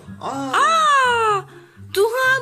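A high-pitched voice gives a drawn-out wailing 'aaa' of about a second that rises in pitch and then falls away. It plays over background music with a low, repeating bass pattern.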